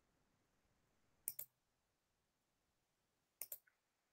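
Computer mouse clicks in near silence: two quick double clicks about two seconds apart.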